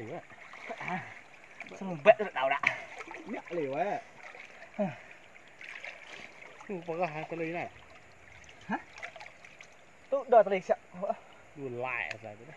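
Short bursts of men's talk over a steady faint hiss of river water lapping and splashing around people standing in it.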